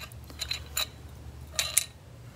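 Light clicks and clinks of a small porcelain Frozen Charlotte doll and its stand being handled: a few single taps, then a louder cluster near the end.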